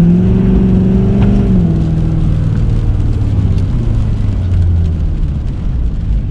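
A 2017 Ford F-350's 6.7-litre Power Stroke turbo-diesel engine making a short pull under acceleration. The engine note jumps up and holds for about a second and a half, then drops back to a lower, steady drone.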